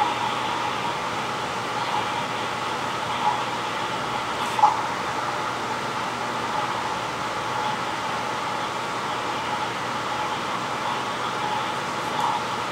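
Steady mechanical hiss and hum of room noise, with one brief faint knock about four and a half seconds in.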